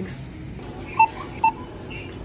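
Self-checkout machine beeping twice, two short electronic beeps about half a second apart.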